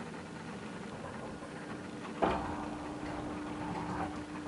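Elevator car getting under way: a sharp clunk about halfway through, then a steady hum from the drive as the car moves.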